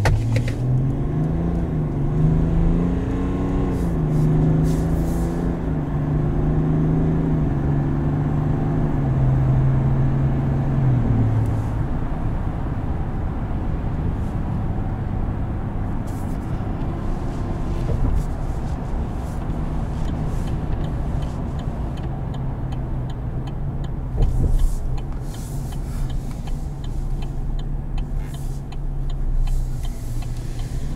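The Silverado's 3.0 L Duramax inline-six turbo diesel, heard from inside the cab, accelerating from a stop. Its note rises and steps through the gears over the first dozen seconds, then settles into a steady low cruise drone with road noise.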